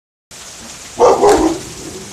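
A dog barking twice in quick succession about a second in, over the steady hiss of heavy rain.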